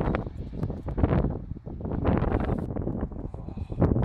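Wind buffeting a phone microphone: an uneven, gusty rumble broken by short rustles and knocks.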